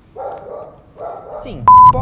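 A dog barking twice, followed near the end by a loud, steady, single-pitch electronic beep lasting about a third of a second.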